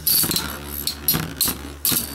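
Metal Fight Beyblade spinning tops clashing in a clear plastic stadium: a quick series of sharp metallic clinks and scrapes as the tops knock into each other and the stadium wall.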